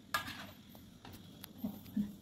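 Metal spatula scraping and tapping against a wok of simmering coconut milk: a short scrape just after the start, then a light click about halfway through.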